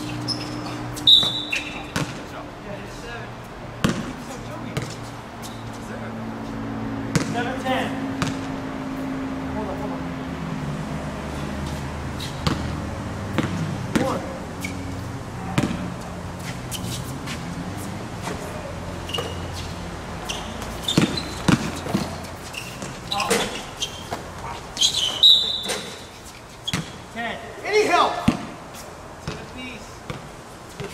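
Basketball bouncing on an outdoor hard court during a pickup game: irregular dribbles and bounces with players' footfalls, and voices in the background.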